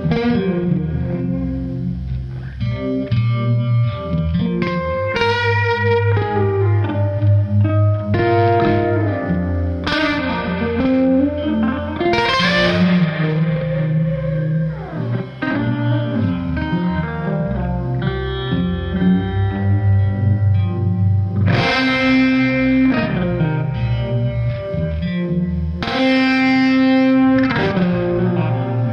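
Peerless Retromatic hollow-body electric guitar, tuned down to C standard, playing slow blues chords and fills through a Gypsy Vibe and overdrive pedal board into a 1964 Fender Vibroverb amp. Ringing, sustained chords are struck afresh every few seconds, with a note sliding down in pitch about halfway through.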